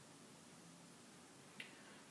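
Near silence: quiet room tone, with one short, faint click about three-quarters of the way through.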